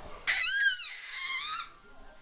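Baby's high-pitched squeal: one call about a second long that rises and then falls in pitch before trailing off.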